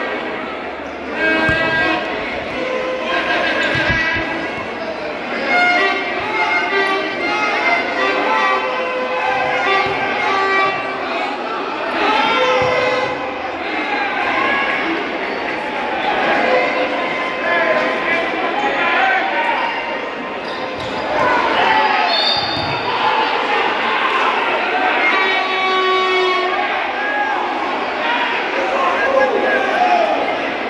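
Futsal match play in an echoing sports hall: thuds of the ball and squeaks of shoes on the court, with players and spectators shouting throughout.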